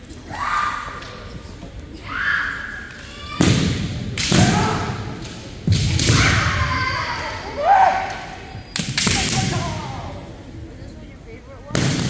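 Kendo bout: fencers giving long, drawn-out kiai shouts, with about five sharp cracks and thuds of bamboo shinai strikes and stamping feet on the wooden gym floor.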